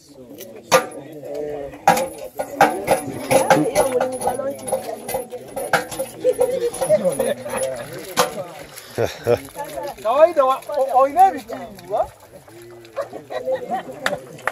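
Several people talking and calling out outdoors, not in English, with sharp clicks and knocks scattered through.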